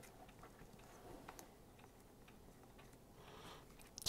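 Near silence with faint, scattered ticks and taps of a marker tip writing on a whiteboard.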